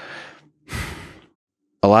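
A man breathing audibly into a close studio microphone: two soft breaths about a second apart, then a man's voice starts speaking near the end.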